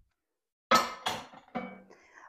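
Kitchen dishes clinking against a hard countertop as they are handled. There is a sharp clink about two-thirds of a second in that rings briefly, then a lighter knock near the end.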